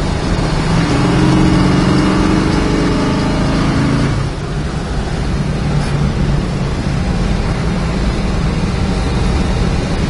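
The 1963 Dodge Polara's 426 Max Wedge V8, heard from inside the cabin while driving. Its engine note strengthens and climbs for about three seconds under acceleration, then drops back about four seconds in to a steady cruise with road noise.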